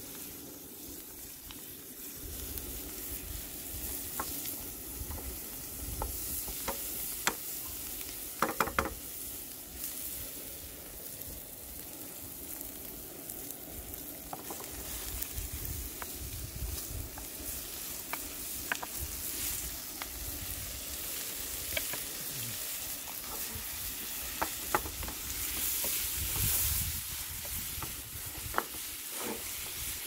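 Food sizzling in a frying pan over a high-pressure propane burner, with a utensil knocking and scraping against the pan now and then. The sizzle gets louder for a moment about 26 s in.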